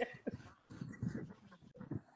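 Faint, breathy laughter and breathing in short snatches, heard over a video call's audio.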